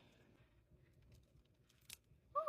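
Near silence, with a single faint click near the end.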